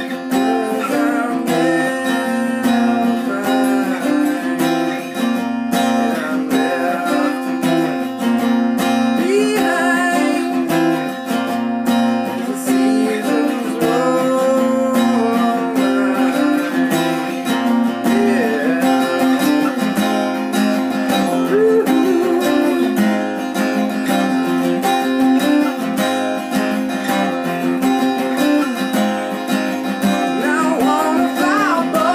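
Steel-string acoustic guitar strummed, with a steady low note ringing under the chords, and a man singing over it.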